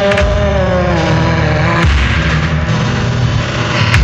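Experimental vaporwave music built on samples: a heavy, pulsing bass under a pitched sample that glides slowly downward for about two seconds and cuts off with a click, followed by a noisier, hissing stretch.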